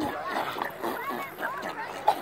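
Indistinct, wordless voices: short rising and falling vocal sounds.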